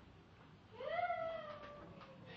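A small child's drawn-out, high-pitched vocal squeal, starting about three-quarters of a second in, rising quickly and then slowly falling, held for over a second.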